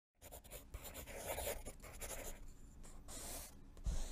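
Scratchy strokes of writing on paper, quick and uneven, with a low thump near the end as the sound cuts off.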